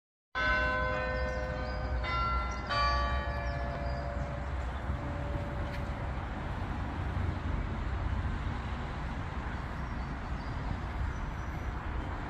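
Bells struck three times in quick succession at different pitches, each note ringing on and fading away over a few seconds, above a steady low rumble.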